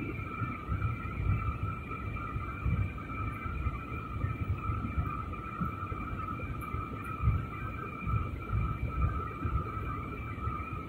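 Jet airliner cabin noise during descent: a steady high engine whine over a low, uneven rumble.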